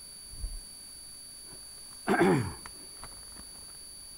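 A man clears his throat once, about two seconds in, followed by a few faint clicks.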